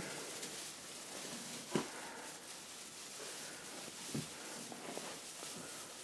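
Quiet room with three faint clicks, spaced a second or more apart, as the plastic branches of an artificial Christmas tree are handled and bent into place.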